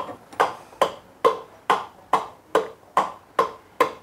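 Steady run of short knocks, about two and a half a second, as the cylinder block of a Kawasaki ZZR1100 is tapped down over the pistons and piston rings to seat it on the crankcase.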